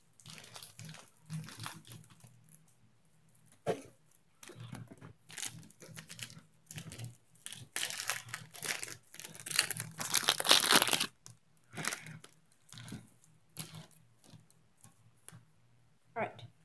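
Crinkling and tearing of a trading card pack's wrapper being worked open by hand, in irregular bursts that are loudest from about eight to eleven seconds in.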